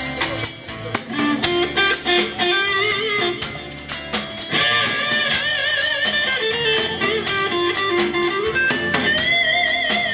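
Live rock band playing an instrumental passage: guitars strumming over a drum kit, with a lead line of long held notes that waver in pitch.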